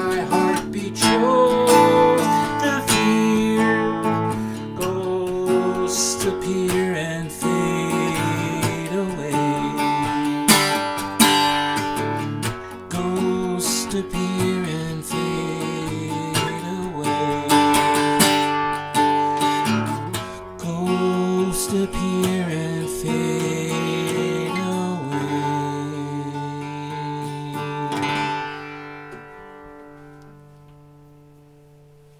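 Acoustic guitar strummed and picked through a song's instrumental close, ending on a final chord that rings out and fades near the end.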